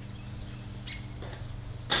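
A single sharp click or knock near the end, from hive equipment being handled, over a low steady hum; a faint bird chirp about a second in.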